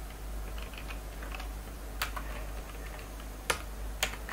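Computer keyboard keystrokes: a few scattered key taps, with two sharper clicks about two seconds in and near the end, over a low steady hum.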